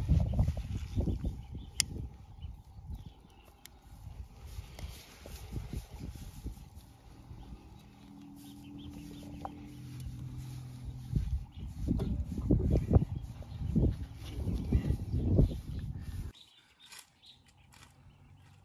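Gusty wind buffeting the microphone in irregular low rumbles, with a paper bag crinkling as it is crumpled by hand. The rumble cuts off suddenly near the end.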